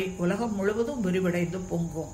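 A woman's voice speaking steadily in Tamil, with a faint steady high-pitched tone behind it.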